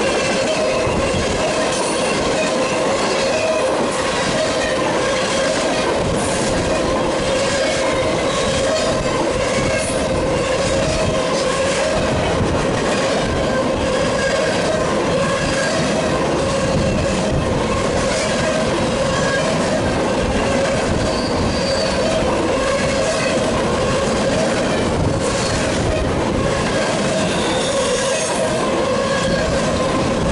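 Freight cars rolling steadily past at close range: steel wheels on the rails, loud and unbroken. A railroad crossing's electronic bell (General Signal Type 2) rings repeatedly over the noise.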